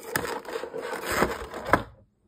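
Stiff clear plastic packaging tray crackling and crunching as it is handled and pulled apart, with a few sharp snaps, the loudest near the end.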